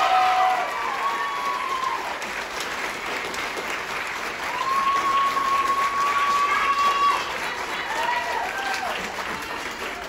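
Audience and band members applauding, with voices calling out over the clapping and one long held whoop in the middle. The applause tapers off near the end.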